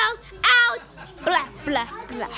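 A young girl's voice close to the microphone, making short high-pitched squeals and yelps rather than words. The loudest is a rising squeal about half a second in.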